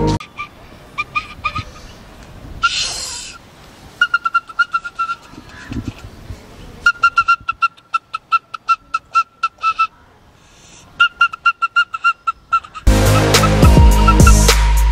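A bamboo flute blown by a child in short repeated toots on one high note, several a second, in four bursts with pauses between, and a short breathy rush about three seconds in. A music track with a beat comes back in about a second before the end.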